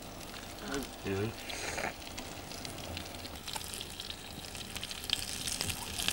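Sausages sizzling in a frying pan over an open wood fire: a steady, faint crackling sizzle that gets busier in the second half.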